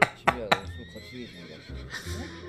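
A man laughing in a few short bursts near the start, then quieter talk with a faint thin tone that rises slightly.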